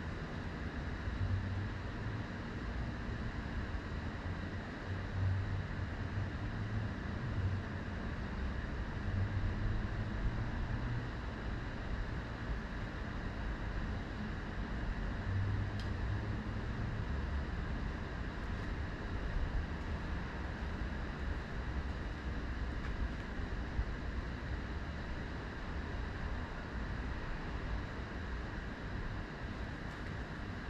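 Steady low rumbling outdoor ambience, with wind buffeting the microphone in uneven gusts.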